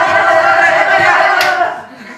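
A group of people shouting together in one long, loud cry that breaks off near the end, with a short sharp crack just before it stops.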